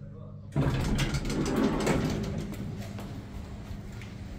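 Elevator doors of an old Hitachi Biru-Ace D sliding open with a mechanical rumble and clatter, starting suddenly about half a second in and easing off after a couple of seconds, over a steady low hum.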